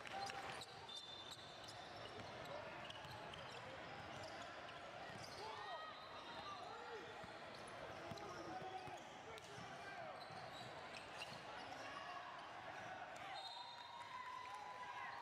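Faint indoor basketball game sound: a basketball bouncing on a hardwood gym floor, with spectators' voices and shoe squeaks in the background of a large hall.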